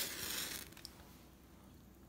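A match struck on the side of a matchbox: a sharp scrape right at the start, then the hiss of the match flaring, dying away within about a second.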